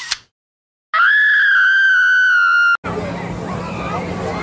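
A brief whoosh, then, about a second in, a shrill high-pitched scream held steady for nearly two seconds that cuts off abruptly, followed by the murmur of an outdoor crowd.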